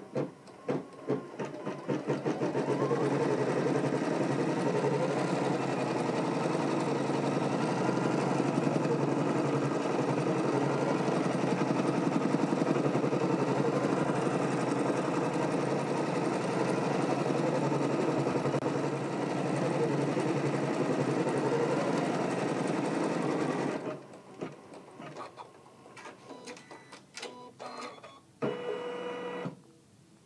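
Janome Continental M17 sewing and embroidery machine stitching out a line embroidery design: a few separate stitches as it starts, then a steady, fast stitching rhythm for about twenty seconds that stops abruptly. Scattered clicks and a short whir follow near the end as the stitch-out finishes.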